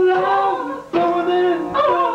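Two male voices loudly singing an improvised song in long, drawn-out notes over a strummed acoustic guitar; the singing breaks off briefly just before a second in, then carries on.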